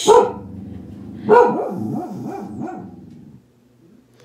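Pet dogs barking indoors: one bark right at the start, another about a second later, then a quick run of shorter rising-and-falling barks that die away shortly before the end. The dogs are barking at a water delivery arriving.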